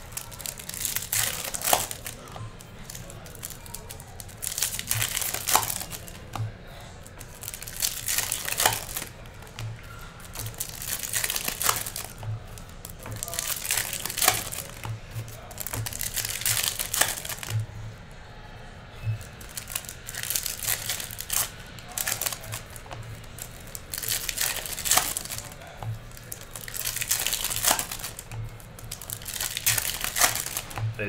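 Foil trading card packs being torn open and crinkled by hand, in repeated bursts every second or two.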